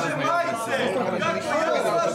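Several people talking over one another at once.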